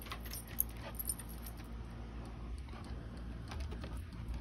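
A dog's collar tags jingling lightly, in scattered short metallic clinks.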